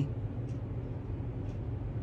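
Steady low hum of room tone, with two faint light clicks about half a second and a second and a half in.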